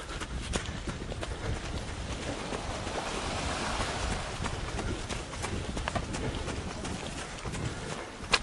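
Footsteps over stony, pebbly ground, with many small clicks and clatters of stones and the camera being jostled, over a steady rushing noise.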